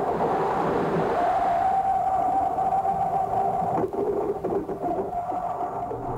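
Ambient background music: a steady, held drone tone over a low, rumbling haze, dipping slightly in level about four seconds in.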